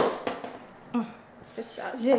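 A single sharp snap right at the start, then short bits of a woman's voice, muttering, about a second in and again near the end.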